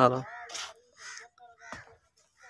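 A bird calling a few times, short faint calls spaced out after a brief spoken word, with a soft click near the end.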